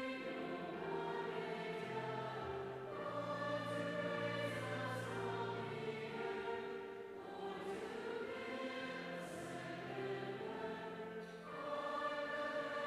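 Mixed youth choir of boys and girls singing in a large church: long held chords that change every second or two, with brief breaks between phrases.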